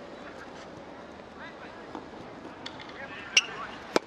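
Tennis racket striking the ball on a flat serve: a single sharp pop just before the end, preceded a little earlier by a shorter click, over faint distant voices.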